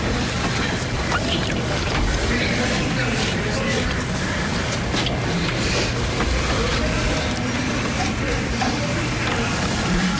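Steady, loud, noisy rumble with indistinct voices in it: the audio of a phone video played back in court, heard without clear words.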